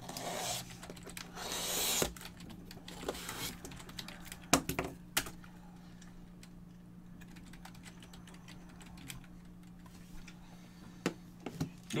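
A short rustling scrape over the first two seconds, then a few scattered light clicks and taps, typical of typing on a keyboard, over a steady low electrical hum.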